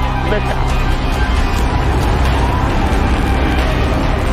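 SpaceX Falcon 9 rocket's nine Merlin engines at liftoff, a loud, steady low rumble and roar, mixed with a music soundtrack.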